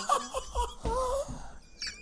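A man laughing hard, in breathy bursts with the pitch sliding up and down.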